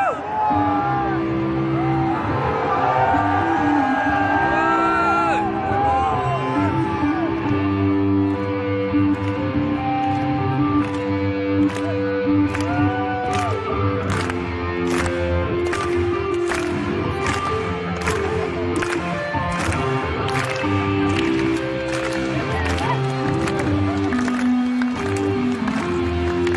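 A live rock band in a large hall opening a song: sustained electric guitar notes, with crowd shouts and whoops over the first few seconds. Drums come in about eight seconds in with a steady beat of cymbal strikes.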